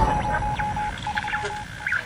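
Synthesized title-sequence sound effects: an irregular run of electronic beeps at one pitch for about a second and a half, with short high chirps over them, the last and loudest near the end.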